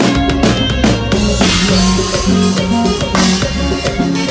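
Live band music led by a drum kit: quick drum strokes in the first second and a half, then a sustained cymbal wash until about three seconds in, with a bass line running underneath.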